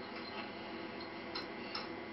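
A few faint, light clicks of wooden puzzle pieces being set into a wooden puzzle board, the clearest about one and a half seconds in.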